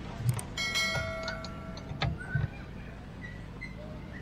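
A bell-like metallic chime rings out about half a second in and fades over about a second and a half. It comes between a few dull knocks.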